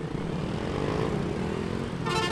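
Traffic: motorbike and truck engines running together, with an engine note rising during the first second as the vehicles move off.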